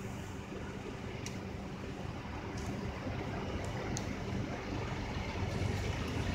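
Steady low rumble and hum of a motor vehicle's engine running, growing a little louder toward the end, with a few faint ticks.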